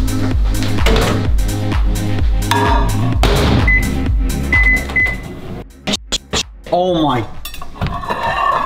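Background electronic music with a steady beat cuts out, then a Panasonic microwave oven beeps three short times at one pitch, followed by a few sharp clicks as its door is opened and a short voiced exclamation.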